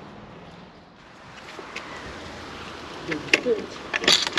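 Steady outdoor background noise that grows a little about a second in, with a short faint voice and a click about three seconds in.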